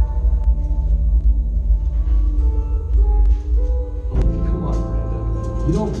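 Percussion ensemble music: a deep, steady rumble under long held tones, with a new group of struck notes entering about four seconds in.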